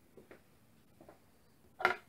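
Handling knocks close to the microphone: a few faint taps, then one louder short knock near the end.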